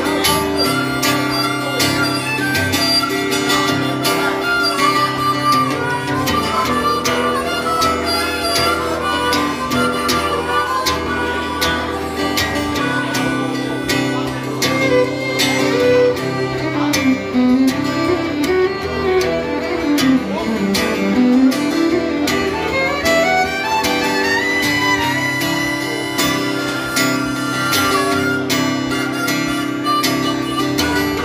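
Live instrumental break of a country-rock song: harmonica and fiddle playing the melody over a strummed acoustic guitar.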